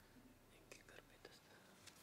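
Near silence: room tone with faint whispered voices and a few light clicks.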